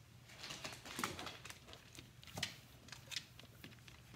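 A yellow Labrador's claws clicking and skittering on a hardwood floor as it runs about: an irregular run of taps, with a couple of louder ones.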